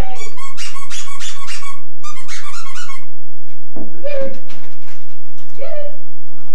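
A squeaky dog toy squeezed over and over, about five squeaks a second, in two runs during the first three seconds. Two short, lower sounds follow, about four seconds in and near the end.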